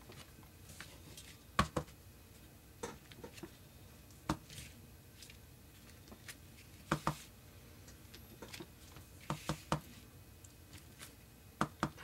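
Irregular light taps and clicks of papers and craft tools being handled and set down on a tabletop, about a dozen in all, several coming in quick pairs or triplets.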